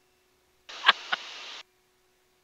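Aviation headset intercom squelch opening for about a second with a hiss, carrying two short sharp noises close to the microphone, then shutting off again; a faint steady hum lies underneath.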